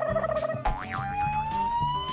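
Comedy background music with a low repeating beat. A held tone stops about half a second in, and a long, slowly rising whistle-like sound effect takes over.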